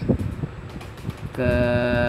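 A man's voice holding one drawn-out syllable during the second half, over a low, steady background rumble.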